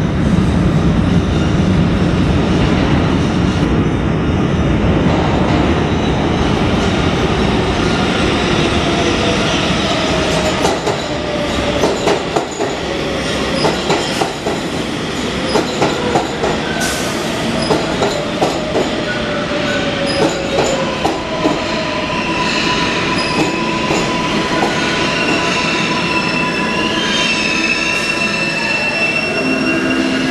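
R142A subway train entering a station and braking to a stop. A loud rumble as it approaches gives way to wheels clacking over rail joints and a whine from its electric traction motors that falls in pitch as it slows. High wheel squeal comes in toward the end.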